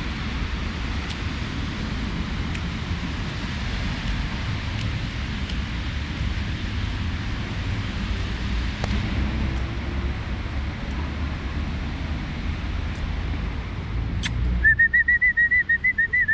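Steady outdoor background noise, mostly a low rumble. Near the end a person whistles one steady, slightly wavering high note for about two seconds, calling a dog back.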